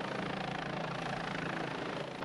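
Steady helicopter engine and rotor noise, an even rushing hum with no break.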